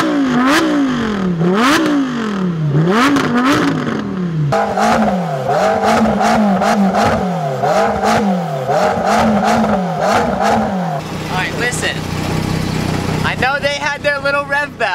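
A supercar engine being revved while stationary, in quick repeated throttle blips, each a fast rise in pitch falling back down. The blips come about one a second, then faster and shallower from about four seconds in, and stop about eleven seconds in.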